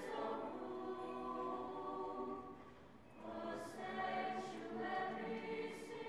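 Mixed-voice high school choir singing: a held chord, a brief break a little before halfway, then the voices come back in on a new phrase.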